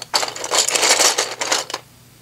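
Plastic LEGO roof tiles (slope bricks) clattering as a hand rummages through a full plastic storage tub: a dense run of clicks and clinks that dies away near the end.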